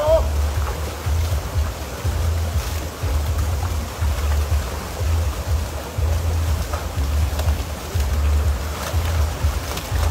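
A river running over rocks in a steady rush, under background music whose bass pulses in regular blocks about once a second.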